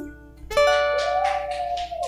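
Steel-string acoustic guitar: a chord is strummed about half a second in and left ringing, with a few lighter strums after it, closing the song. The end of a held sung note is heard at the very start.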